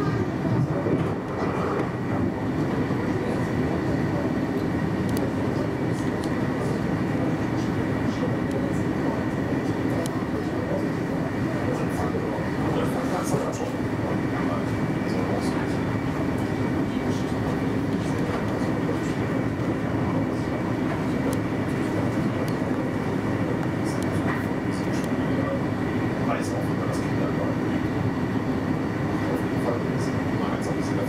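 Steady running noise of an intercity train travelling at speed, heard from inside the driving cab, with a steady whine running through it and occasional faint clicks.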